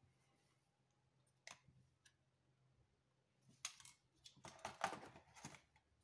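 Faint clicks and light scrapes of an HO-scale model passenger coach being handled and set down into the box's packaging tray: a single click about one and a half seconds in, then a cluster of clicks and scrapes in the second half.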